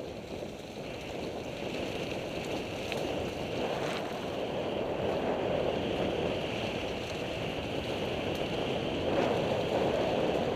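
Mountain bike rolling over a dirt trail: a steady rush of wind on the microphone and tyre noise that grows louder as the bike gathers speed, with a few light rattles.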